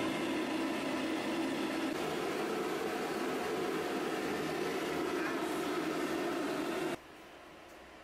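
Pet grooming hair dryer blowing steadily, an even rush of air, while a bichon's coat is brushed out; it stops suddenly about seven seconds in.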